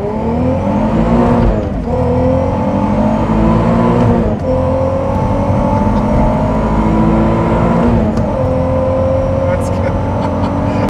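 Supercharged 3.2-litre VR6 of a Mk4 VW R32, heard from inside the cabin, accelerating hard. The revs climb, drop at an upshift about two seconds in, climb again, drop at a second upshift about four and a half seconds in, then the engine pulls steadily.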